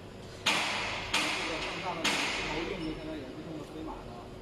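Three sharp hisses of compressed air from the sewing machine's pneumatic system, each starting suddenly and fading over about half a second, the first three the loudest sounds, with voices murmuring underneath.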